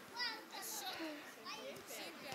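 Several people's voices calling and chattering at a distance in short, high-pitched bursts, with no clear words, and a brief hiss just under a second in.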